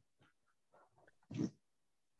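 A few faint mouth clicks, then a short breath a little over a second in, from a person drawing breath over a video-call microphone before speaking again.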